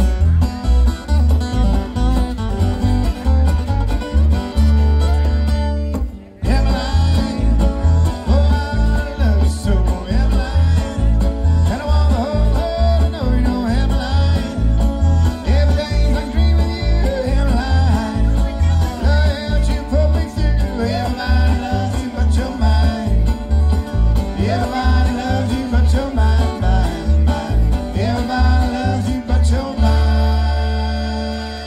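A live string band plays a bluegrass-style tune on fiddle, two acoustic guitars and upright bass, over a steady pulsing bass line. The music stops for a moment about six seconds in, then picks up again.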